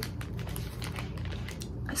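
Small clear plastic bags holding enamel pins being handled, giving a run of faint, irregular crinkles and clicks.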